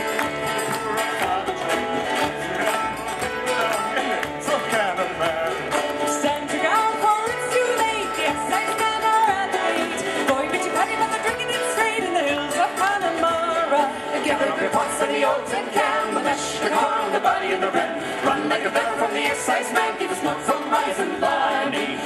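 Live folk band playing an instrumental passage between verses on fiddle, mandolin, acoustic guitar and acoustic bass guitar.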